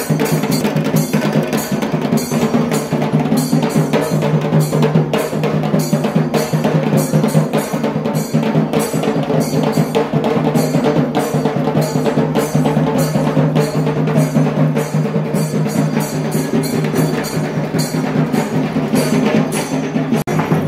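Processional drums beating a fast, continuous rhythm with rolls, dense strokes throughout.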